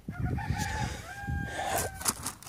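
A rooster crowing: one long, drawn-out call that holds a steady pitch and ends just before the close.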